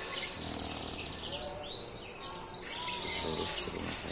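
Small birds chirping in quick, high notes, with a few short whistled notes in the middle.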